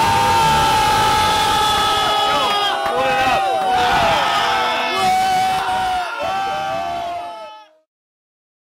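A small group of people yelling and cheering together in long, drawn-out high shouts, several voices overlapping. The shouting cuts off suddenly near the end.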